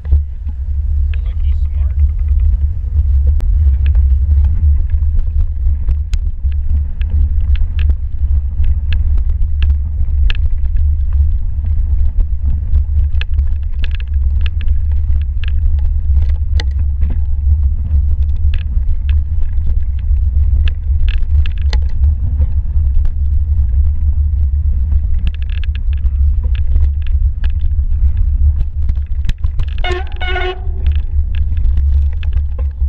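Mountain bike riding over snow, heard from a camera on the bike: a steady low rumble of wind and tyres on the microphone, with frequent sharp clicks and rattles from the bike over the bumpy trail.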